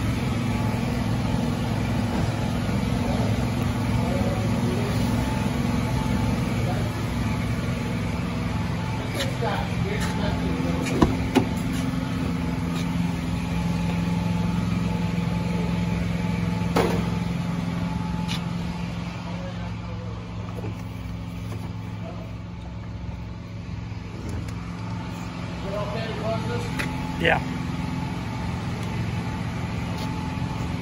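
A car engine idling steadily, a low hum that shifts slightly in pitch, with a few sharp clicks about 11 and 17 seconds in.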